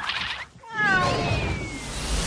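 Cartoon cat's drawn-out yowl, starting just under a second in and sliding down in pitch: the scream of the cat falling from a great height.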